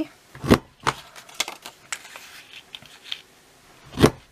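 Handheld paper corner punch pressed down on a strip of designer paper, a sharp click about half a second in as it cuts a corner, then smaller clicks and light paper rustling as the strip is moved, and another sharp punch click near the end.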